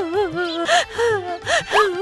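An elderly woman's voice making wordless, wavering moans broken by two sharp, breathy gasps, over faint background music.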